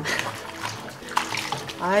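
Water splashing and sloshing in a sink basin as salted napa cabbage is rinsed by hand, with a few sharper splashes as the leaves are moved through the water.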